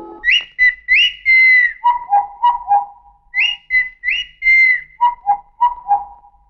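Human whistling imitating bird calls: two high, rising whistles with held notes, then a quick run of short notes alternating between two lower pitches. The whole phrase is whistled twice.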